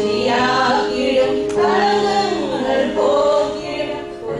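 A group of women singing a Christian song together, with steady held notes sounding beneath the voices.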